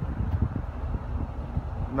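Low, uneven rumble of wind buffeting a phone's microphone outdoors.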